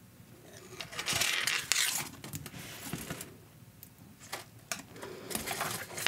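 Beads clicking faintly as they are threaded onto thin craft wire and picked from a small dish of beads, with scattered small clicks and light handling rustle.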